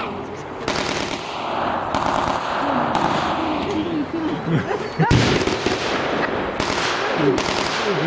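Scattered blank gunfire from re-enactors' rifles and submachine guns: about half a dozen single shots, the loudest about five seconds in. Spectators' voices are heard between the shots.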